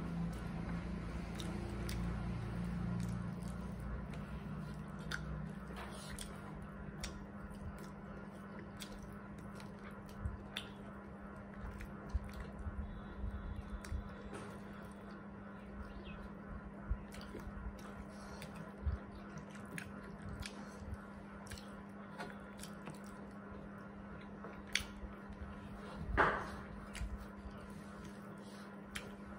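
Close-up eating sounds: chewing and fingers working rice and curry on metal plates, with scattered short sharp clicks and smacks and one louder sound near the end. A steady low hum runs underneath.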